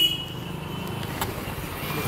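A car engine running close by over a steady low street hum, with a single sharp click a little past halfway.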